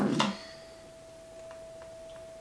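Quiet room with a faint, steady single-pitched tone held throughout, and a few soft ticks in the second half.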